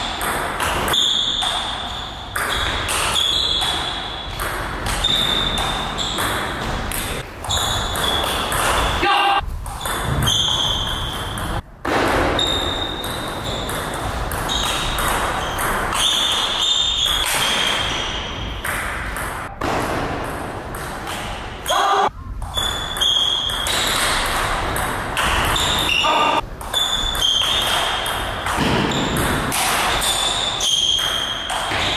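Table tennis rallies: the ball clicking back and forth off the bats and the table, each hit with a short high ring.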